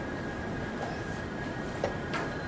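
Steady hum of a large hall with a faint high tone running through it, and one sharp click near the end as a wooden chess piece is set down on the board.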